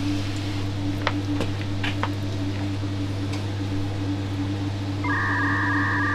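Steady low electric hum with a few faint clicks. About five seconds in, a steady two-tone electronic beep starts, an edited-in sound effect.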